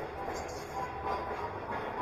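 Steady rumble of a moving train carriage, heard from inside the compartment of Universal's Hogwarts Express ride train.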